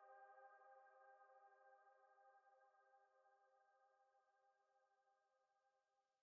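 Near silence: the faint held chord at the end of an electronic song dies away in the first second or two.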